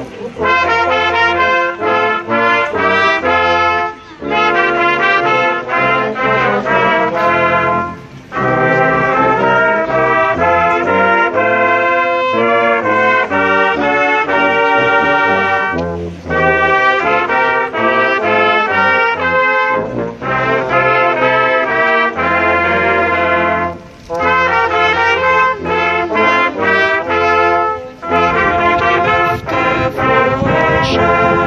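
A church brass choir of trumpets, tenor horns, trombone and tuba playing in chords, in phrases about four seconds long with a brief breath between them.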